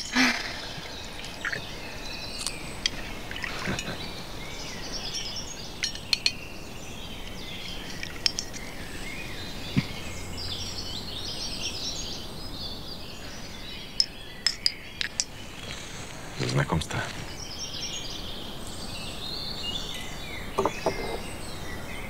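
Garden birds chirping steadily throughout, with liquor being poured from a bottle and a quick run of sharp clinks of small glasses touching in a toast a little after halfway.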